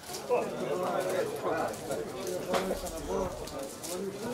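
Indistinct voices of players and onlookers calling out across a football pitch during play, with a single sharp knock about two and a half seconds in.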